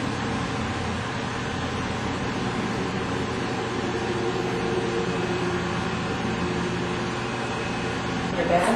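Steady background hiss with a low, even hum: room tone with nothing else happening.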